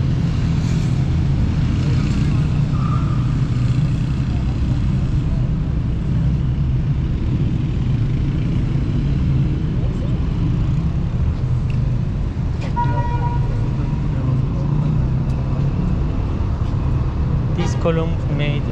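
Steady low rumble of city road traffic, with a brief car horn about two-thirds of the way through.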